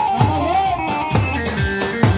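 Turkish folk dance music played loud over a sound system: a melody line with pitch bends over a heavy drum beat about twice a second.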